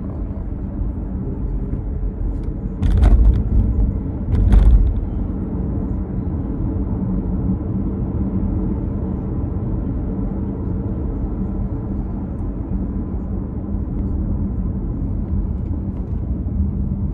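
Steady road and engine drone of a car heard from inside the cabin while driving. Two louder thuds come about three and four and a half seconds in.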